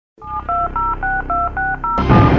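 Touch-tone telephone keypad tones: a quick run of seven short key-press beeps, about four a second, as a number is dialed. A low steady hum runs underneath.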